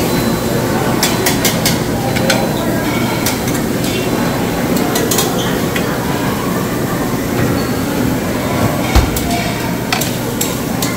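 Busy buffet dining-room ambience: a steady din of crowd chatter with scattered clicks and clinks of serving utensils and dishes, and one sharp knock near the end.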